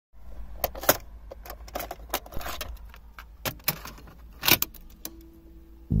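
Irregular plastic clicks and rattles of a cassette being handled at the centre console and loaded into a car cassette deck, over a low steady rumble. A faint steady hum sets in about a second before the end.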